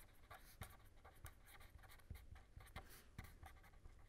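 Faint scratching of a pen on paper: short, irregular strokes as handwritten words are written.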